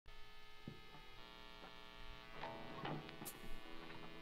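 Faint steady electrical hum with a few soft ticks scattered through it.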